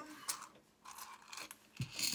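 Small coins clinking and scraping in a bowl as it is picked up and handled, a few soft scattered clicks.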